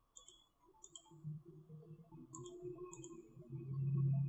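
A handful of sharp clicks from a computer mouse and keyboard, some in quick pairs, over a faint low hum.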